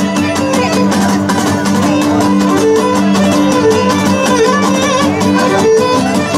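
Live Cretan folk dance music: a Cretan lyra bowing the melody over several laouta strumming a quick, steady beat.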